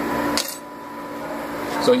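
A single light click about half a second in, over a steady low hum.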